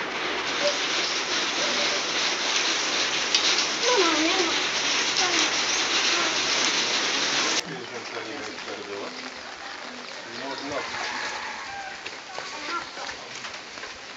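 Steady rain falling, a dense hiss that cuts suddenly to a quieter, lighter hiss about halfway through, with faint voices underneath.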